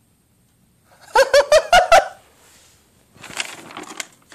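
A young person's high-pitched laughter, five quick 'ha' bursts about a second in. About three seconds in, softer paper rustling and crinkling as a sheet of drawing paper is handled.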